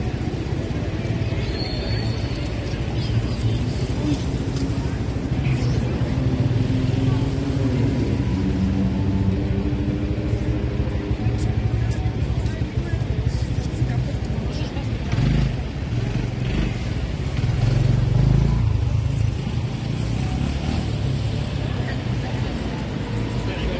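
Busy city-square ambience: a steady low hum of road traffic with indistinct voices of passers-by, growing louder for a couple of seconds near the end.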